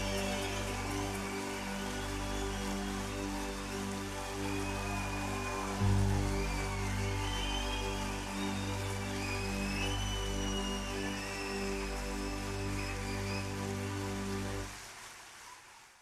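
Live concert recording: a band holding sustained chords over a steady bass, with crowd noise and high whistles on top. It fades out about a second before the end.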